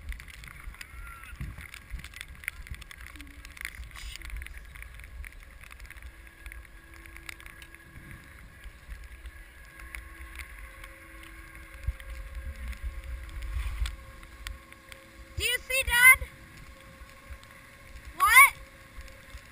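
Skis sliding over snow, with low wind rumble on the GoPro's microphone. Near the end a high-pitched voice calls out twice in short shouts that rise in pitch.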